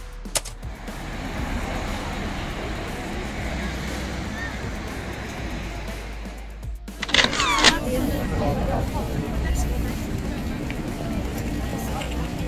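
City street ambience: traffic and people's voices over a steady background, broken by a sudden cut. About seven seconds in comes a brief high squeal.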